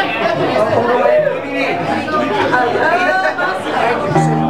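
Crowd chatter in a bar: many voices talking at once, none standing out.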